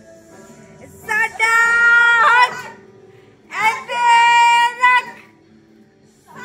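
A woman singing two long, loud held notes, separated by a short pause, over an acoustic guitar playing quietly beneath.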